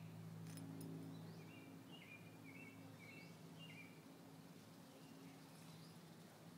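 Faint bird calls outdoors: a quick run of about six short chirps, starting a second and a half in and lasting a couple of seconds, over a steady low hum, with two soft clicks shortly before.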